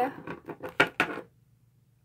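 A small plastic toy figure tapped quickly along a tabletop, about six light clicks in just over a second, then stopping.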